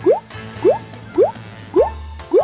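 Cartoon 'bloop' sound effect: a quick rising pop, repeated four times about half a second apart over light background music, as decorations pop onto a toy cake one by one.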